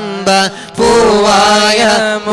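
Men's voices singing an Islamic devotional chant (salawat) through microphones, in a long, melodic line with a brief breath about half a second in.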